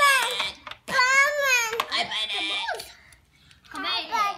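A toddler vocalizing in a high-pitched silly voice: one drawn-out call that rises and falls about a second in, then a few shorter sounds, with a brief lull shortly before the end.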